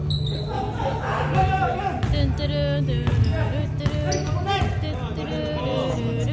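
A basketball bouncing on a hardwood gym court during play, mixed with players' voices and calls.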